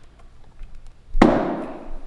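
A single sharp bang about a second in, cutting in suddenly and dying away over about half a second.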